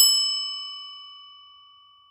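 A single bell ding, struck once and left ringing. Its high overtones die away first and a few clear tones fade slowly until the ring cuts off at the end.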